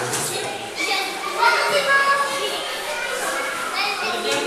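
Many children shouting and calling out at play, their voices overlapping with louder calls about a second and a half in, reverberating in an indoor swimming-pool hall.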